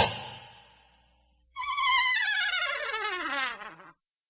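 A hit's ringing tail fades out. Then, about a second and a half in, a muted brass comedy 'fail' sting plays: one long wah-wah note that slides steadily down in pitch with a fast wobble, lasting about two seconds.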